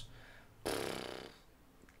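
A single short, breathy human breath lasting under a second, starting about half a second in, with faint room tone either side.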